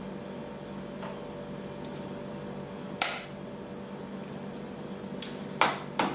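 Plastic pressed-powder bronzer compact snapping shut with one sharp click about three seconds in, followed by a couple of lighter clicks and a knock near the end as it is handled and set down.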